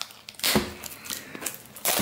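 Rustling and crinkling of a cardboard trading-card box and its packs being handled and opened, with short sharp rustles about half a second in and near the end.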